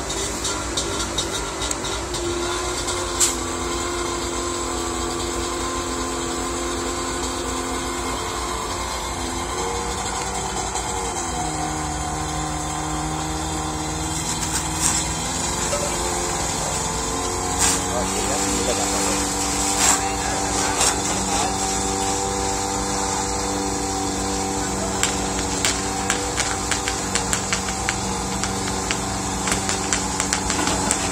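Fire engine's engine and pump running at a steady speed, its pitch shifting a few times, over a steady hiss. Scattered sharp clicks come in the second half, and voices are in the background.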